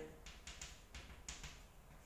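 Chalk writing on a chalkboard: a run of faint, short scratches and taps, several strokes in quick succession.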